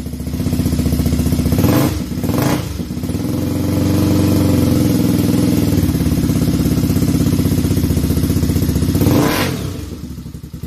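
All-terrain three-wheeler engine revving hard under load, with loud surges about two seconds in and again near the end and a steady high-revving run in between.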